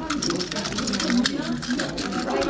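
Small die-cast and plastic toy cars clicking and rattling against each other as a hand rummages through a basket of them, in quick irregular clicks, with voices talking in the background.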